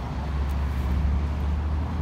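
Steady low rumble of road traffic, swelling slightly about a second in.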